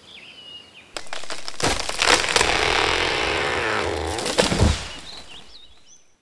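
Outdoor ambience with birds chirping. A loud rushing noise swells in about a second in and fades away over the next four seconds, and the birds are heard again before the sound cuts off at the end.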